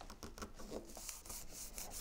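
Hands rubbing and sliding over cardstock, pressing an envelope's liner flat: faint, irregular paper scuffing and rustling.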